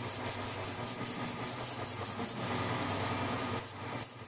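Noisy electronic intro music with a steady low hum and a fast, even high ticking, about six ticks a second. The ticking drops out briefly near the end as the track begins to fade.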